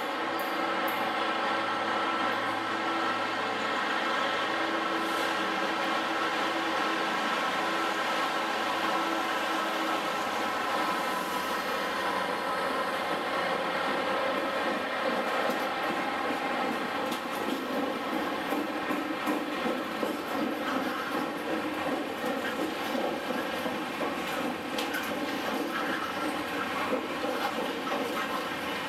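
Freightliner Class 66 diesel locomotive running through with its two-stroke V12 engine droning steadily, then its long train of hopper wagons rolling past with an uneven rattling and clatter of wheels on the rails from about the middle on.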